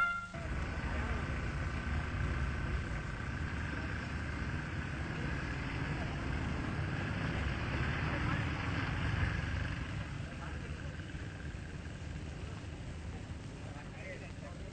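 Indistinct murmur of voices over a low, steady rumble, with no clear words; it gets somewhat quieter about ten seconds in.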